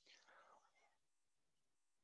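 Near silence: a pause in a recorded lecture, with no sound above the noise floor.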